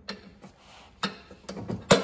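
Needle-nose pliers clicking against a plastic cable clip and its metal bracket as the clip is pinched to free the mower deck's engagement cable: a few light, separate clicks, the sharpest near the end.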